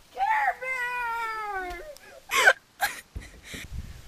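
A child's long, high, wavering vocal call or whine lasting nearly two seconds and slowly falling in pitch, followed by two short, sharp noisy bursts, the louder one about two and a half seconds in.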